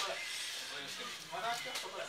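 Indistinct voices talking in the background, with one sharp click right at the start.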